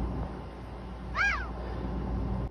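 A single brief high-pitched call that sweeps up and then down in pitch, about a second in, over a steady low hum.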